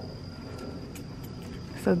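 Steady high-pitched chorus of crickets.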